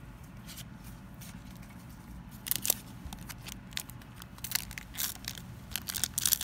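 A foil Pokémon booster pack wrapper being handled, crinkling and crackling in quick sharp bursts that thicken near the end as the top starts to tear.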